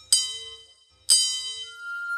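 Wine glasses partly filled with wine struck with a thin stick: two strikes about a second apart, each ringing bright and fading. Near the end a steady high note begins and holds.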